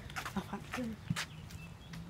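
Quiet pause filled with faint, brief voice fragments and a few light clicks over a low steady hum.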